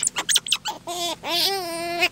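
Baby otter pups squealing: short high chirps, then one long, slightly wavering whine starting about a second in.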